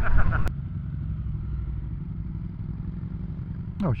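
A Triumph Street Triple's three-cylinder engine running at a steady low note while riding, under road and wind noise picked up on the bike. A short click comes about half a second in, after which the engine and road noise are all that is heard.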